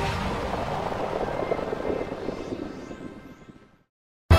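Peugeot 2008 driving over a dusty gravel track: a rushing rumble with dense crackling of gravel under the tyres, fading out to silence in the last half second.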